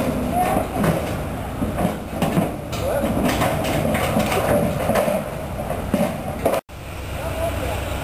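Cattle hooves knocking and clattering on a livestock trailer's ramp and floor as longhorns are loaded, over indistinct voices and a low steady hum. The sound cuts out briefly near the end.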